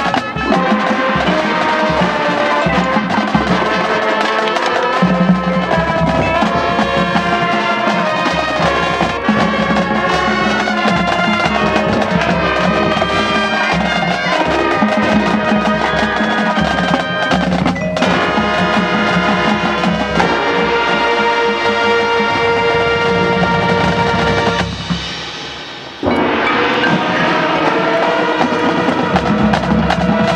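Marching band playing its field show, percussion to the fore; a few seconds before the end the music drops away briefly, then comes back in suddenly at full volume.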